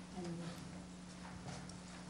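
Quiet room tone with a steady low electrical hum, a few faint clicks or knocks and brief faint murmured voices.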